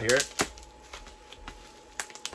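Clear plastic bag crinkling and rustling with a few light clicks, as a router mount is worked out of it; a sharp click comes just under half a second in.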